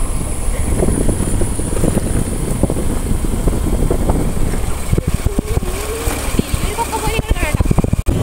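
Riding a motorcycle over a rough gravel road: wind buffets the microphone, and the bike rumbles and rattles over the stones with steady jolts. A faint voice comes in over it in the second half.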